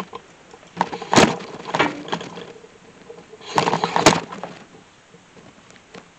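Handling noise of a camera being moved and repositioned by hand: a few knocks and clatters with rustling, the loudest about a second in and again around four seconds in.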